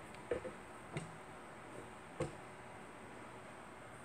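Quiet room tone with three faint, short taps in the first half, the kind of handling noise made by a hand-held camera.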